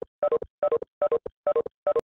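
Video-conference notification chime, a short falling two-note tone with a brief third note, repeating about two and a half times a second as participants leave the call one after another.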